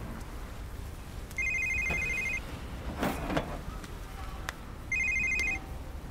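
A phone ringing twice, each ring a warbling electronic tone about a second long, over a low steady background rumble. A short noise sits between the two rings.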